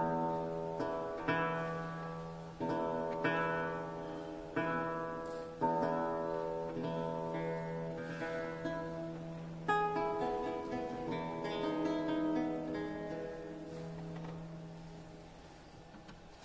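Baroque lute and theorbo playing the closing bars of a gigue: plucked chords over a sustained bass note. The last strong chord comes about ten seconds in, a few softer notes follow, and the sound fades away near the end.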